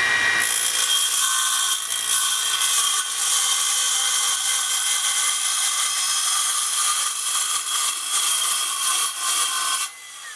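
Makita XGT 40V CS002G cordless cold-cut metal saw with a 185 mm blade cutting through a 2.5 mm sheet of Corten steel: a steady, high-pitched cutting noise that stops just before the end as the blade leaves the cut.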